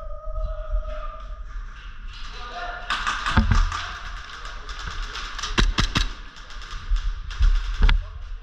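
Airsoft gunfire: rapid sharp clicks of shots and BB hits, dense from about three seconds in, broken by several heavy knocks, the loudest near the middle and at the end.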